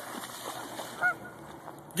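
Water sloshing and splashing as a large dog wades through shallow pond water, with one short pitched call about halfway through.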